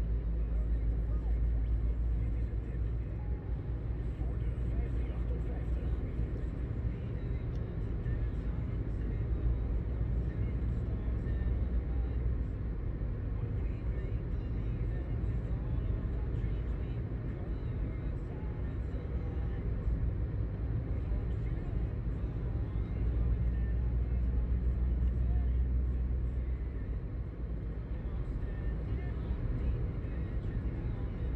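Steady low rumble of a car's engine and tyres heard inside the cabin while driving at a constant speed, swelling a little for a few seconds in the later part.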